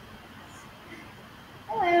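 Low steady background noise, then near the end a voice says "Hello", high and drawn out.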